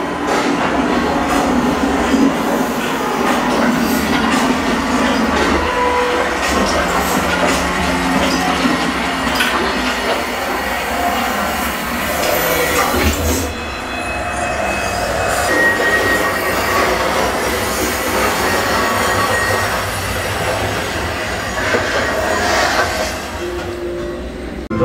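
Loud, steady rumbling and rattling noise with a few brief squealing tones, easing off for a moment about halfway through.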